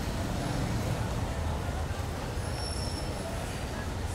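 Steady low rumble of street traffic and vehicle engines, with a faint high whine partway through.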